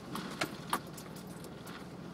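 Off-road Jeep's engine running steadily at crawling speed, heard from inside the cab, with three sharp rattles or knocks in the first second as it rolls over rock.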